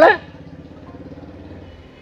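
A faint, steady engine hum, like a motor vehicle idling in the background, heard in a short pause between speech. It fades out near the end.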